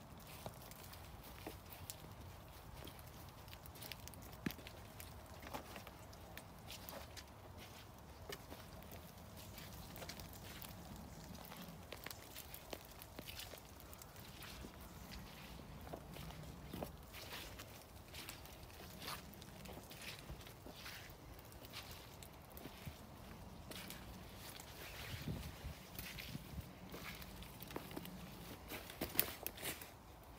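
Faint footsteps of a person walking along a wet, leaf-littered woodland path, with many small irregular clicks and crackles underfoot.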